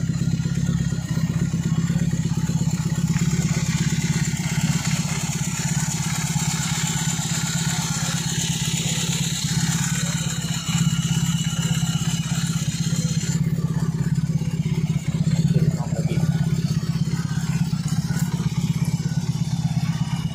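BMW R18 First Edition's 1800 cc boxer twin idling steadily through handmade custom slip-on mufflers.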